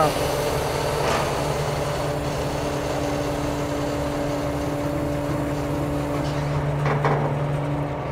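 Truck engine running with its PTO-driven hydraulic pump working, a steady even drone, as the lowboy's neck cylinder lowers the detachable gooseneck to the ground.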